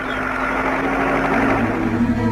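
Farm tractor engine running as it drives along pulling a trailer, growing louder. Music starts near the end.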